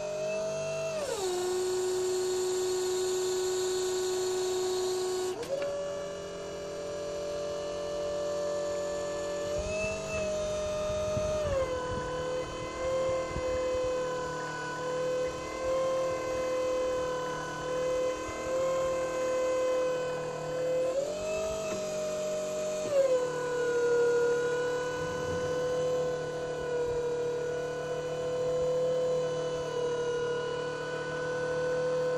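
Atlas loader crane's hydraulic system running with a steady whine. The whine drops in pitch three times as the crane is worked and comes back up between. A hiss runs through the first few seconds of the first drop.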